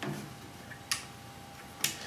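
Three sharp clicks about a second apart from the power switch of a compact router being flicked while it is unplugged, so the motor does not start.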